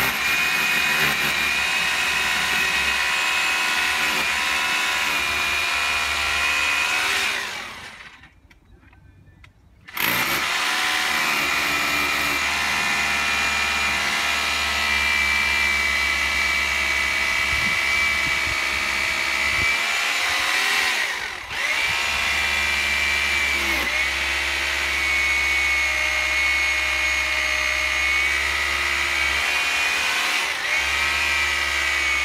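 Electric power drill boring injection holes into the mortar joints of a stone wall for a drill-and-inject damp-proof course, running with a steady high whine. It stops for about two seconds around eight seconds in, then starts again, with a brief dip around twenty-one seconds.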